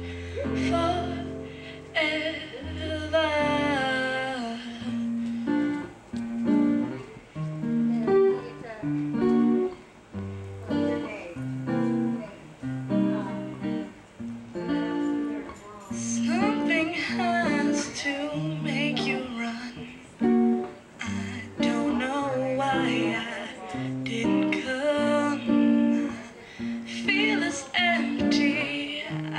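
Acoustic guitar picking a steady chord pattern while a woman sings in phrases, with stretches where the guitar plays alone.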